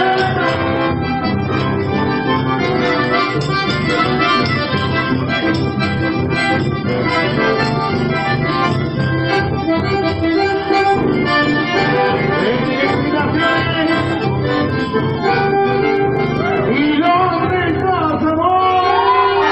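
Instrumental chamamé passage played live on accordion and bandoneon over electric bass, the accordion carrying the melody.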